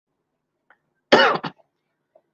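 A man coughs once, briefly, about a second in.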